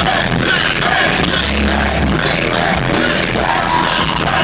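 Live hip-hop concert music from the PA: loud amplified track with sustained heavy bass notes and a vocal over it, recorded on a phone from within the crowd.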